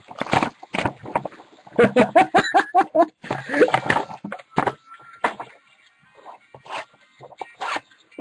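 A man laughing in a string of short repeated bursts, mixed with the rustle and crinkle of trading-card pack wrappers and cards being handled.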